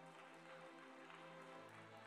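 Quiet sustained keyboard chords played as soft background music, with a lower bass note joining about one and a half seconds in.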